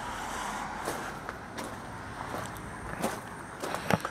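Steady hiss of road traffic passing at a distance, with a few soft footsteps.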